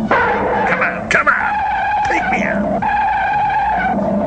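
Film-soundtrack giant monster cries: a run of high, screeching calls starting abruptly, one swooping up and down in the middle, then one long held cry near the end.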